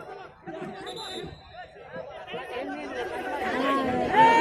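Spectators chattering at a football match, several voices overlapping close by, growing louder toward the end.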